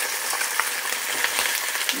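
Halved mojarra pieces frying in hot oil in a stainless-steel pot, a steady sizzle with fine crackles of spattering oil as they are turned with metal tongs to brown the other side.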